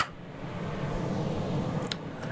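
Kitchen range hood fan running with a steady low hum, and a brief click near the end.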